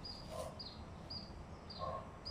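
A bird chirping over and over, a short high note about twice a second, with two louder short sounds about a second and a half apart.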